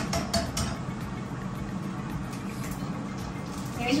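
A few sharp clicks of a metal spatula and eggshell against a frying pan in the first half second, then a steady low hum of a running air fryer.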